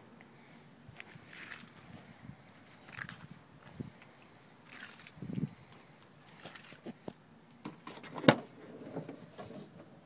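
Soft scattered steps and handling rustles on pavement, then a sharp click about eight seconds in as the car's door latch is opened; the engine is off.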